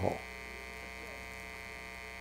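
Steady electrical mains hum from the tent's sound system, a low buzz with many even overtones, heard plainly in a pause between spoken sentences.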